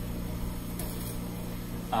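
Steady low machine hum with a faint mains-like buzz, from the running cryostat and lab equipment.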